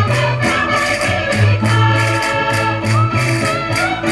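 Live Portuguese folk dance music from a folk ensemble, with a quick, steady percussion beat over melody and bass notes.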